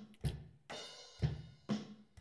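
Background music with a drum kit: a beat of drum hits about twice a second, with a cymbal ringing briefly after the second hit.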